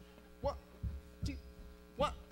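Steady electrical mains hum from a stage sound system, with a few short laughs about half a second apart.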